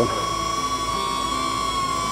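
DJI Neo mini drone hovering, its propellers giving a steady high whine that wavers slightly in pitch.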